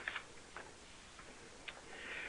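Quiet pause: a faint steady hiss with a few soft, isolated ticks, the clearest one near the end.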